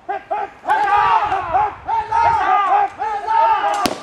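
A group of men shouting cheers together, several rounds in quick succession, in answer to a call for three cheers. A single sharp crack sounds just before the end.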